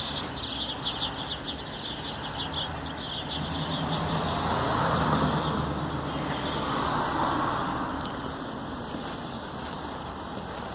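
Two cars passing on the street, their tyre and engine noise swelling and fading one after the other around the middle. Small birds chirp in the first few seconds.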